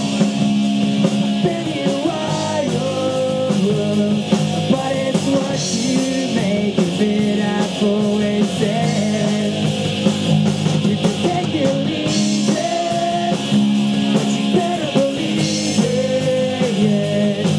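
A live rock band playing: electric guitars over a drum kit with cymbals, going without a break.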